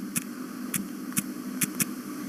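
Keypad taps on a smartphone's on-screen number pad: short, sharp clicks, about five in two seconds, one for each digit of a phone number being entered. A steady low hum runs underneath.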